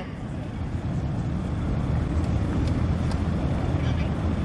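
Piston engines of small propeller-driven Van's RV kit planes running at low taxi power as they roll past, a steady low drone that slowly grows a little louder as they approach.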